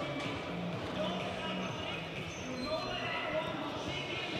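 Indistinct voices and faint music in a large indoor hall, with dull thuds of a horse's hooves on soft arena dirt.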